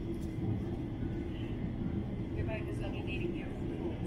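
Steady low rumble of an airliner cabin in flight, engine and airflow noise with a constant hum, and faint passenger voices in the background.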